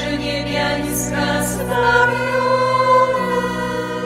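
A women's choir of religious sisters singing a slow hymn in long held notes over a steady low accompanying tone.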